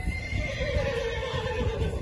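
A horse neighing: one long call that falls in pitch, over background music with a steady beat.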